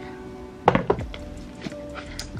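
Two dull thunks close together, about two-thirds of a second in, as a red Cartier jewellery box and its lid are handled, over background music.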